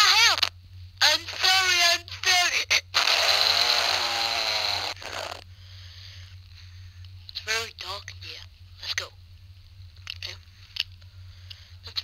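Wordless vocal sounds from a Flipnote animation's recorded soundtrack, heard through a handheld console's small speaker. First come wavering high-pitched cries, then a long raspy noise about three to five seconds in, then a few short quieter calls, all over a steady low hum.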